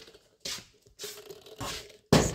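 Rustling and scraping of stored items being shifted by hand, in three short bursts.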